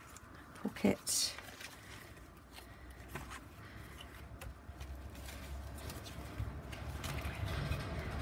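Paper handling: the pages of a spiral-bound paper journal being turned, with a brief rustle of paper about a second in and faint scattered handling sounds after. A low rumble builds through the second half.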